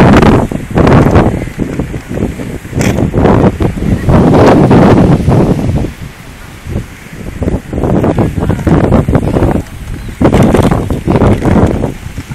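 Wind buffeting a phone's microphone in loud, irregular gusts, easing off for a moment about six seconds in.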